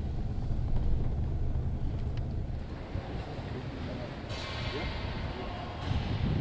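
Low, steady rumble of a vehicle's engine and tyres heard from inside the cabin as it moves slowly, easing off after about three seconds. A steady hiss comes in about four seconds in.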